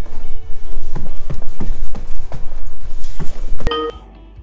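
Hurried footsteps thudding about three times a second, loud and close on a handheld camera's microphone with a steady low rumble of handling noise, and music underneath. A brief ringing tone sounds near the end.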